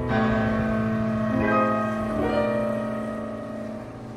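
Chamber music for flute, clarinet and piano: long held notes over ringing piano chords, with a change of note about a second in, fading gradually toward the end.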